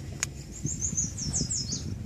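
A small bird singing a quick run of thin, high notes that step downward, lasting about a second, over low rumbling outdoor noise. A single sharp click comes just before the song.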